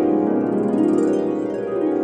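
Solo harp playing flowing arpeggios, with pitch runs sweeping up and down over low sustained bass notes.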